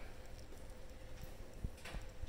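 Soft, scattered thuds and taps of feet and puppy paws on a rubber-matted floor as a rag is swung and dragged for the pup to chase, with a short rushing noise near the end.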